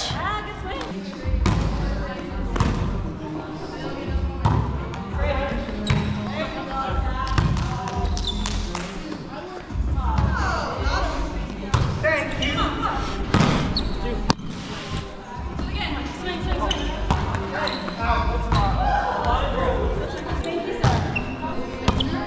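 Indoor volleyball rally: sharp slaps of the ball off players' forearms and hands, and bounces on the hardwood gym floor, with short shouts from players and dull low thuds of movement on the court.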